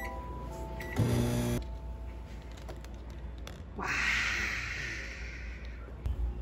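Electronic beeps from a cooking appliance's keypad as its buttons are pressed, then a short buzzing tone about a second in. Later a hiss rises suddenly and fades away over a second and a half.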